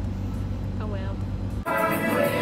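Steady low rumble of a car's cabin on the move, with a brief voice about a second in. Near the end it cuts off suddenly and music takes over.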